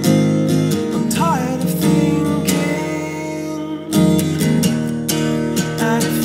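Acoustic guitar strummed in chords with a male voice singing a short wavering vocal line about a second in. The chords ring and fade, then a fresh hard strum comes about four seconds in.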